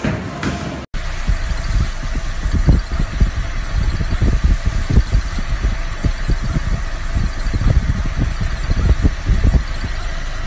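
Less than a second of bowling-alley hall noise, then a steady low rumble with many irregular low thumps inside a car's cabin.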